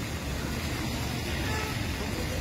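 Steady road traffic noise: a low, even rumble of passing vehicles.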